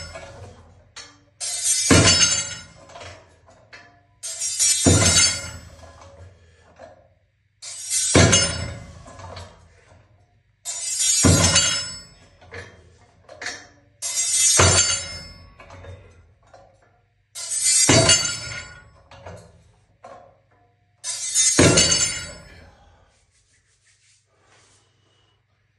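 Plate-loaded block weight coming down on the platform with each one-handed rep: a loud metal clank with the plates rattling and ringing for about a second, seven times at roughly three-second intervals.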